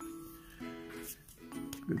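Quiet background music: a few held notes, one after another.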